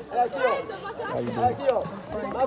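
People talking and chatting; only speech is heard.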